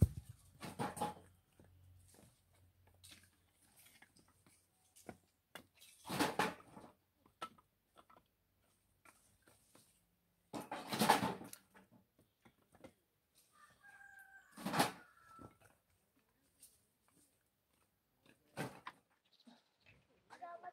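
Pieces of firewood knocking and scraping as they are pulled out of a woodpile, in about five short bouts, the loudest about halfway through. A chicken calls faintly for a couple of seconds about three-quarters of the way in.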